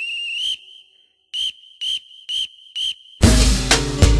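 A whistle in the music: a long blast that ends about half a second in, then four short blasts about half a second apart, like a marching-band cue, after which the full beat with drums and bass comes in loudly near the end.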